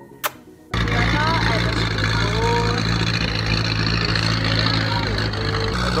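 Speedboat engine running steadily under a loud rush of wind and water, cutting in abruptly about a second in after a short click. Voices are faintly heard over it.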